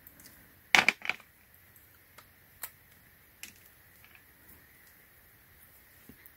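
USB cables and their cardboard packaging being handled: a couple of sharp clicks and rustles about a second in, then a few faint, scattered taps.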